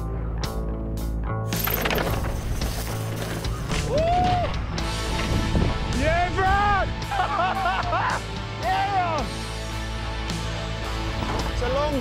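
Background music with a steady low drone and a melody of swooping, rising-and-falling notes from about four seconds in, over the crunch of mountain bike tyres rolling on loose rock and scree.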